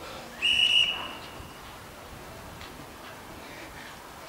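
A single high, steady whistle-like tone, starting just after the beginning and lasting a little over a second.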